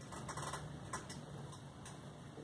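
A few light, irregular clicks and rustles of a painting being handled, held close to the microphone, with the sharpest click about a second in.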